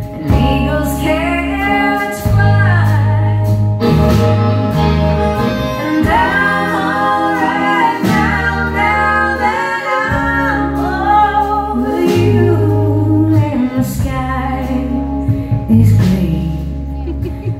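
Live band playing a song: bass guitar and drums keep a steady beat under electric guitar, with a wavering lead melody line over the top.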